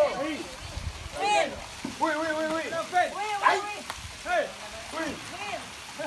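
Several people's voices chanting and cheering in short, repeated calls, one after another.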